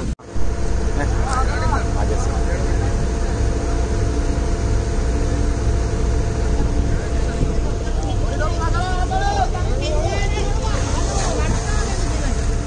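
Fishing boat's engine running with a steady low drone, and men's voices calling out over it at times. The sound cuts out for a moment right at the start.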